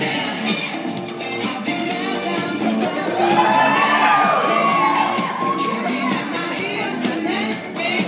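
Pop music with singing playing loudly while an audience cheers and whoops, the cheering loudest about three to five seconds in.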